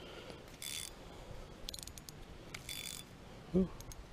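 Spinning reel's drag being adjusted: three short bursts of ratchet clicking about a second apart as the drag is tightened. A brief vocal sound near the end.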